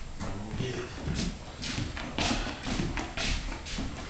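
A large mastiff's paws and claws thudding and clicking on a hardwood floor as it walks, about two or three steps a second.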